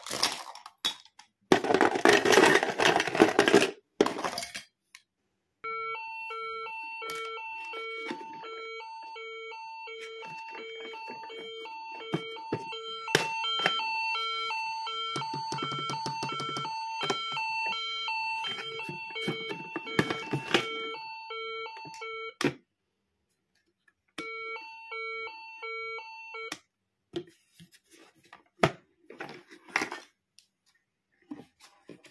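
Hard plastic toy pieces clattering and rattling for the first few seconds, then a toy ambulance's battery sound module beeping an electronic tone about twice a second for some fifteen seconds, with small clicks of fingers on the plastic. The beeping stops and comes back briefly near the end.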